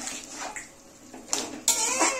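Steel slotted spoon stirring and scraping wet vegetable curry in an aluminium kadhai, a few short scraping strokes with the loudest near the end.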